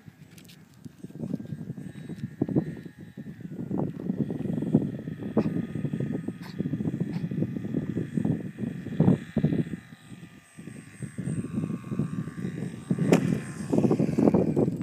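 Thin, steady whine of a radio-controlled Extra 260 model plane's motor, its pitch gliding down in the second half as the plane comes in to land. Gusts of wind buffet the microphone, louder than the motor.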